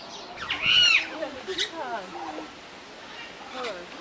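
A bird's loud squawk lasting about half a second near the start, followed by softer, lower calls.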